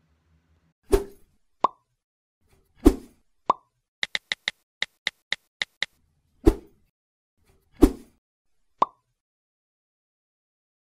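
Cartoon-style sound effects for animated on-screen graphics. There are four heavy thumps, three of them followed by a short, bright pop. In the middle comes a quick run of about ten sharp clicks, roughly five a second.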